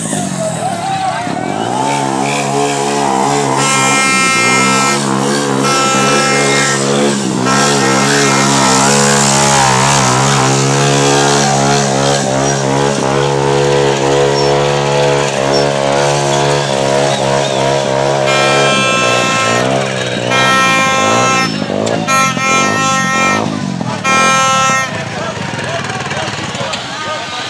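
A motorcycle engine running steadily for most of the stretch, with a horn hooting in short repeated blasts near the start and again towards the end, over a loud shouting crowd.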